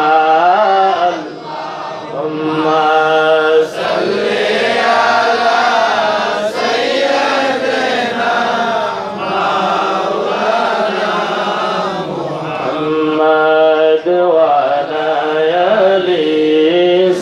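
A man's voice chanting an Islamic devotional song into a microphone, with long held notes that waver in pitch.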